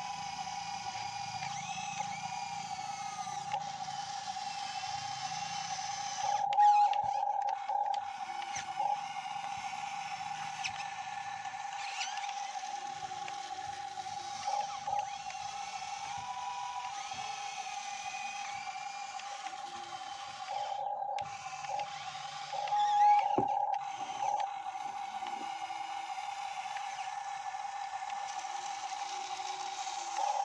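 Motors of a remote-control model Hitachi 135 excavator whining at one steady pitch while it works. The whine grows louder in short spells about six and twenty-three seconds in, with faint mechanical clicks.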